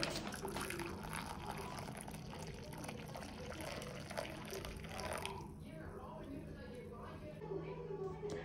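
Milk poured in a thin stream into a glass bowl: a faint, steady splashing trickle that thins and tapers off about five seconds in.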